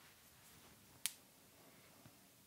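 Near silence broken once, about halfway through, by a single short, sharp click.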